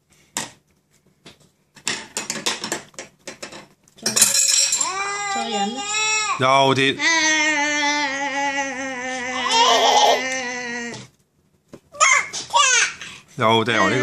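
A toddler's voice: a few light taps and clicks of a plastic spoon on the high-chair tray, then about seven seconds of loud, drawn-out babbling in long held notes, and a short burst of babble near the end.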